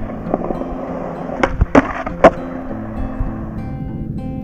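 Skateboard wheels rolling on smooth concrete, a steady grainy rumble, with three sharp clacks from the board in the middle. Acoustic guitar music plays underneath.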